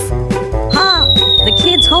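Cartoon falling-whistle sound effect: one long whistle that starts a little under a second in and slides slowly down in pitch, over lively background music.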